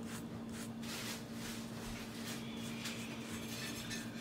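Faint, soft scraping of a metal spoon spreading cinnamon sugar over a slice of bread on a plastic cutting board, over a steady low hum.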